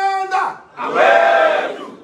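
A man's long, held rallying shout ends about half a second in. A crowd of supporters shouts back together for about a second, a call-and-response chant that dies away near the end.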